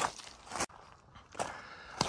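Footsteps crunching on loose white limestone gravel, three steps at a steady walking pace.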